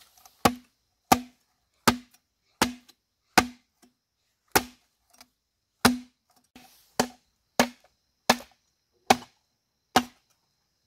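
Machete chopping into a hollow bamboo pole: about a dozen sharp blows at an uneven pace, each with a brief hollow ring from the bamboo.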